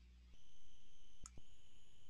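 A steady high-pitched electronic tone, alarm-like, coming in about a third of a second in and dropping out briefly with a faint click a little past halfway.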